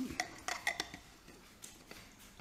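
Metal lid being twisted onto a stainless steel drink tumbler: a quick run of ringing metallic clinks in the first second, then a few lighter clicks.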